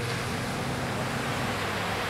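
Steady, even wash of distant ocean surf.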